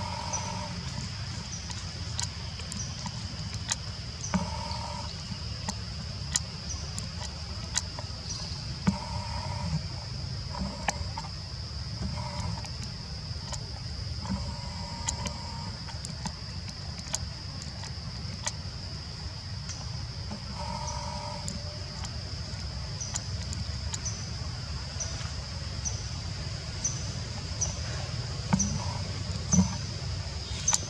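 Outdoor forest ambience: a steady high-pitched drone, with a short high chirp repeating about once a second at the start and again from about two-thirds of the way in. A few brief mid-pitched calls, scattered clicks and a low rumble sit underneath.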